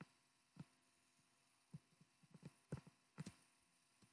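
Faint, dull taps of a stylus on a tablet screen while drawing and writing in digital ink: about seven soft knocks, one near the first second and the rest bunched together in the second half.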